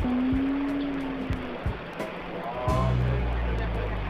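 A man's unintelligible mumbling, with one long drawn-out hum of a sound early on, over background music and a low steady rumble of a subway train.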